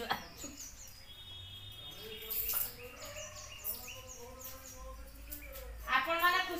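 Faint bird calls: repeated short falling chirps, with a brief steady high note about a second in.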